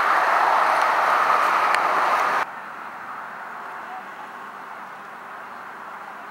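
Loud, steady outdoor background noise, a hiss like wind or passing traffic, that cuts off abruptly about two and a half seconds in. A much quieter, even outdoor background follows.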